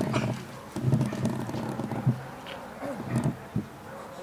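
A dog growling in rough, low bursts while it grips a bite sleeve and is driven by the helper in protection work. Two sharp sudden sounds stand out, about two seconds in and near the end.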